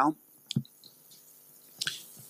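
A pause in speech: quiet room tone broken by one sharp click about half a second in, with a short breathy hiss near the end.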